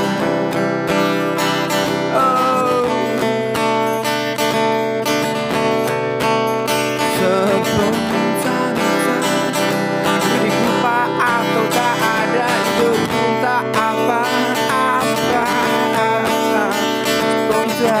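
Acoustic guitar strummed steadily, with a man's voice singing a melody over it.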